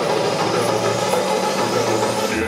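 Electronic dance music playing over a sound system, in a build-up: a dense wash of noise with a sweep rising in pitch through the second half.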